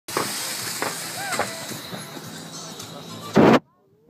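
Steady rush of a wakeboard's spray and wind, with a short voice calling out about a second in. A loud burst of noise comes near the end, then it cuts off suddenly.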